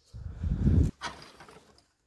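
A hand rummaging through a wooden crate of old plastic toys and cards: a low, heavy rustle and clatter for most of the first second, a sharp click about a second in, then lighter rustling that fades.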